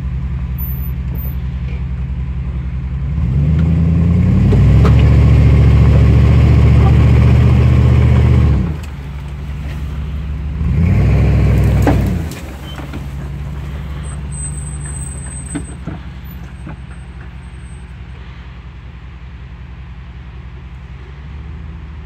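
Jeep Grand Cherokee ZJ engine revving under load as it tows another ZJ on a strap: the revs climb about three seconds in and are held for some five seconds, drop back, rise again briefly near the middle, then settle to a lower steady run.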